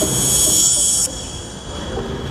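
A loud high hiss for about the first second that cuts off suddenly, over soft background music.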